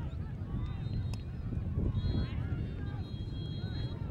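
Referee's whistle at a soccer match: a short blast about a second in, then a long steady blast of nearly two seconds from about halfway through. Wind rumbles on the microphone and spectators' voices carry underneath.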